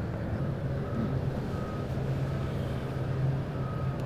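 A vehicle engine runs with a steady low hum while a reversing alarm sounds a few short, high beeps.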